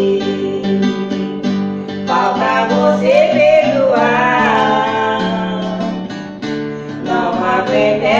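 Two women singing a Portuguese-language romantic song in duet over an instrumental backing with guitar.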